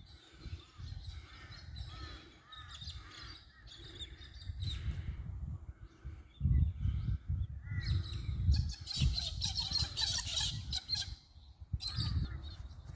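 Wild birds calling, a run of short falling calls repeated over and over, over a low, uneven rumble of wind on the microphone.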